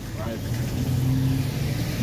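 A car engine running, a steady low hum, with a brief spoken word at the start.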